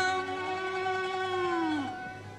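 Classical Arabic orchestral music: a single held note glides down in pitch and fades near the end, in a lull between phrases of the ensemble.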